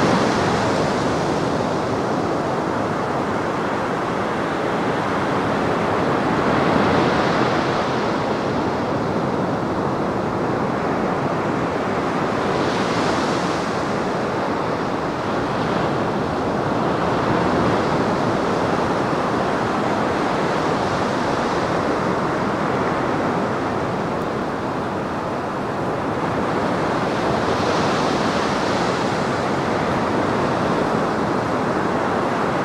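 Sea surf breaking on the shore: a continuous wash of waves, with a brighter hissing surge every six to eight seconds as each wave breaks and runs up the beach.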